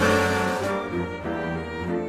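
Orchestral score: a loud full chord at the start, its bright crash fading within the first second, then low strings (cellos and basses) playing a stepping bass line under held chords.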